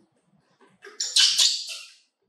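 A baby macaque gives one short, harsh, noisy cry about a second in, lasting about a second.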